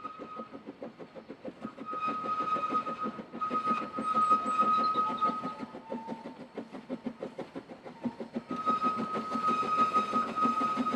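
Narrow-gauge steam locomotive working a train, its exhaust beating quickly and evenly, growing louder for a while in the middle. A thin steady high tone comes and goes in the background.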